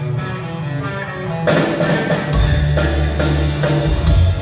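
Progressive rock band playing live, guitar to the fore. A lighter passage gives way about a second and a half in to the full band with drums and cymbals, and the low end grows heavier shortly after.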